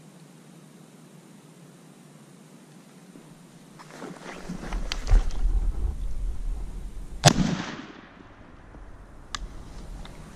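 A single shotgun shot about seven seconds in, one sharp crack with a short ringing tail, after a few seconds of low rumbling and a couple of knocks. A lighter click follows near the end.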